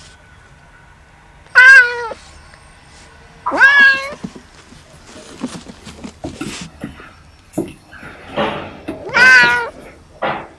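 Kittens meowing: three loud, high meows about a second and a half, three and a half, and nine seconds in, with light knocks and scuffles of play in between.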